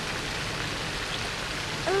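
Steady splashing hiss of a small pond fountain spraying water into the open patch of an ice-covered pond.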